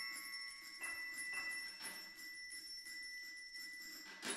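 A quiet passage of contemporary ensemble music led by bell-like metal percussion: one high note rings on steadily while a few soft, light strokes sound in the first two seconds.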